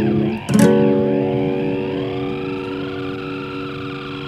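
Instrumental music: a guitar chord struck about half a second in and left to ring, slowly fading, with a sweeping effect gliding over it.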